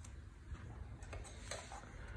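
Faint, light clicks and ticks of hands handling optical audio cables with metal plugs and a small audio box, a few scattered taps over two seconds.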